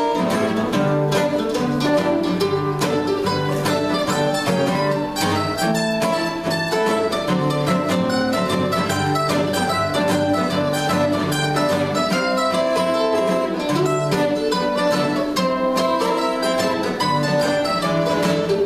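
Mandolin picking a melody over acoustic guitar accompaniment, an instrumental break with no singing.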